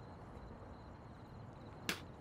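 A man spits once, a short sharp spit near the end, over a low, steady background hush.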